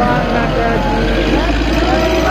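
Several people's voices overlapping, talking or singing, over a steady low rumble.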